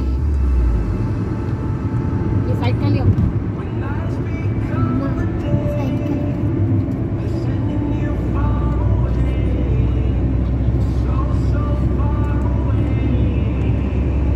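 Steady road and engine rumble of a car driving on a highway, heard from the cabin, with a voice over music playing along with it.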